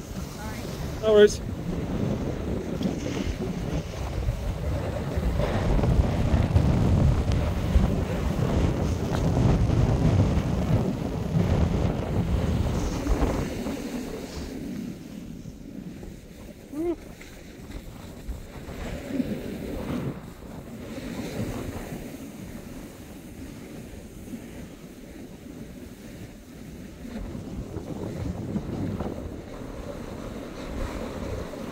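Wind rushing over a phone microphone while it moves downhill on a snow slope, loudest in the first half and easing off about halfway through.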